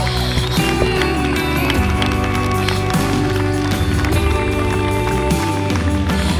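Music: steady held chords under a melody line that slides between notes.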